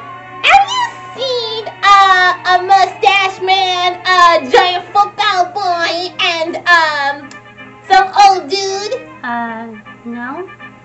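A high-pitched voice singing a string of phrases with a heavy, wavering vibrato and short breaks between them.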